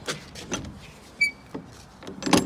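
A few light clicks and knocks of metal door-latch hardware being handled on an enclosed cargo trailer's rear ramp door, with one short, high metallic ping a little past halfway.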